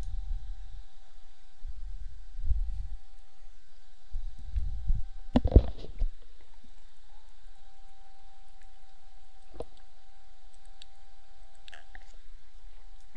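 A sharp computer mouse click about five and a half seconds in, and a fainter click near ten seconds. Beneath them are low rumbling noises on the microphone in the first five seconds and a faint steady electronic tone.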